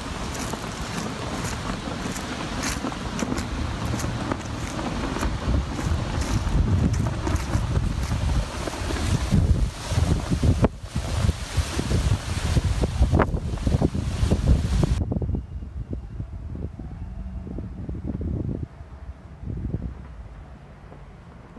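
Wind buffeting a smartphone's microphone, a dense rumbling noise with a few sharp knocks in the middle. About three-quarters of the way through, the hiss cuts out and the noise turns quieter and duller.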